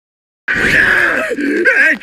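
The cartoon character Plankton groaning in a strained, wavering voice. It breaks in suddenly out of silence about half a second in.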